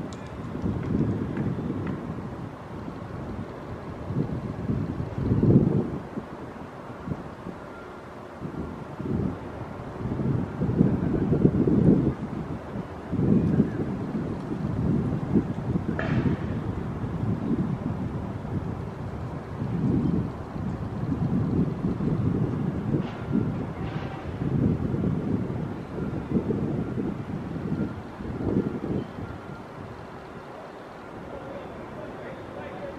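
Wind buffeting the microphone in irregular gusts, a low rumbling noise that rises and falls every second or two, with a couple of faint clicks.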